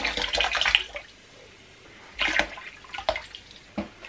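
Cocoa poured from a mug into a bowl of hot whey, splashing through about the first second. A few short splashes or knocks follow at about two and three seconds in.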